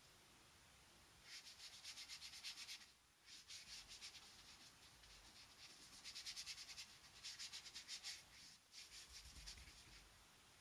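Small synthetic paintbrush scrubbing acrylic paint onto mixed media paper: faint, quick back-and-forth scratchy strokes in several short runs with brief pauses between them.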